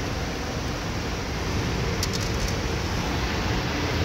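Steady, even background rush with a low hum, like a fan or air handler running, with a few faint light clicks about halfway through.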